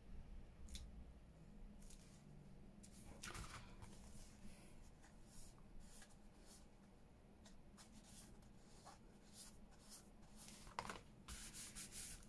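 Near silence, with faint scattered rustles and light taps of a thick layered paper card being handled: pressed flat on a cutting mat, lifted and set back down.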